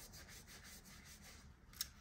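Faint, quick rubbing strokes of a paper tissue being handled and rubbed, with a light tick near the end.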